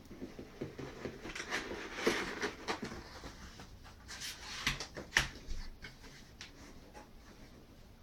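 Cardboard box being opened by hand: the lid and flaps scrape and rustle as they slide, with scattered sharp clicks and knocks, the loudest about five seconds in.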